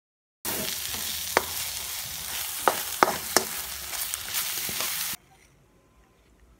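Food sizzling as it fries in a pan, with a few sharp clicks of a utensil stirring against the pan. The sizzle cuts in abruptly about half a second in and stops just as suddenly after about five seconds.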